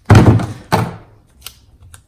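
Roll of plastic tape being handled on a tabletop: two short, loud noisy bursts about half a second apart, the first the loudest, as tape is pulled off the roll and the roll is put down, followed by a couple of faint clicks.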